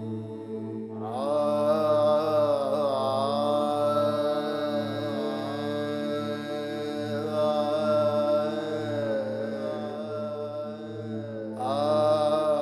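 Devotional chant: a single voice holding long, slowly wavering notes over a steady drone. The voice comes in about a second in and pauses briefly just before the end.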